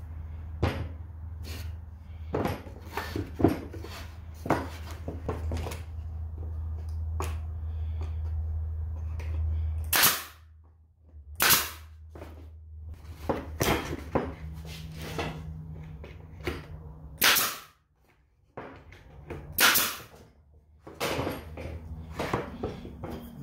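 Pneumatic staple gun firing staples into the wooden frame: about five sharp shots from about halfway on, one to three seconds apart, after lighter knocks of the wood being handled and set in place.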